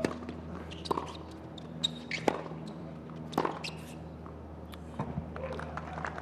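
Tennis ball struck by racquets and bouncing on a hard court during a rally: five sharp, ringing hits in the first three and a half seconds, the loudest about two seconds in. A steady low hum lies under them.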